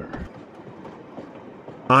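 Steady running noise of a passenger train, heard from inside the carriage.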